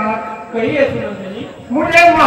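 A man's voice over a stage microphone in a drawn-out, sing-song delivery with gliding pitch, pausing briefly near the end and coming back louder.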